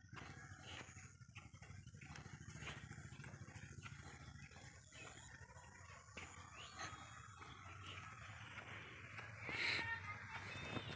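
Faint footsteps on a concrete field path, with a low steady rumble underneath. A short animal call stands out near the end.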